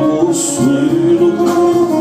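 Male singer performing live into a handheld microphone, holding one long sung note from about half a second in, over instrumental accompaniment.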